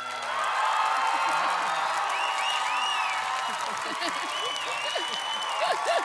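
Studio audience applauding and cheering, with many shouts and whoops over the clapping; the cheering swells in the first second.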